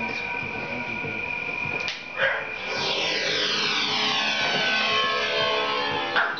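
Intro of a recorded pop song played back in the room: held electronic tones, a whoosh about two seconds in, then a run of falling synth sweeps.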